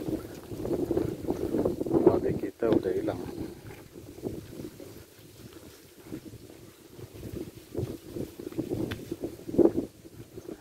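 Wind buffeting a phone microphone outdoors, gusty and uneven. It is louder over the first three seconds, drops low through the middle, and picks up again near the end.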